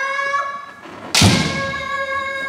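Kendo kiai shouts: a rising cry held for about a second, then a sharp thud about a second in, followed at once by a second long, held shout.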